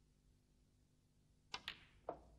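Snooker shot: the cue tip strikes the cue ball, then a split second later the cue ball clicks into the black. These are two sharp clicks near the end, against a quiet, low hum.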